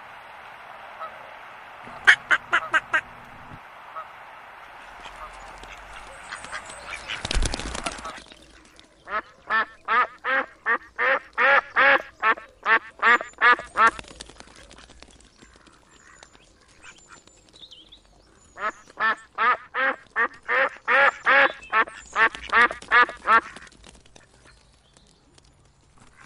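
Domestic ducks quacking in two long rapid runs of about three quacks a second, each bout lasting several seconds. Before them come a few short Canada goose honks over a steady hiss, and a single thump about seven seconds in.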